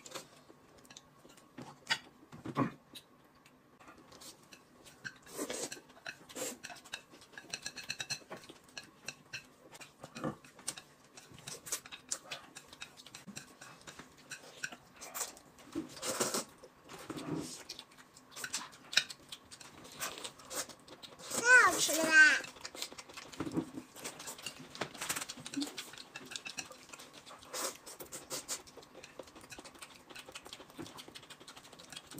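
Table eating sounds: chopsticks and utensils clicking against bowls and plates, with noodles being slurped and chewed. One brief pitched voice sound, wavering up and down, stands out as the loudest moment about three-quarters of the way through.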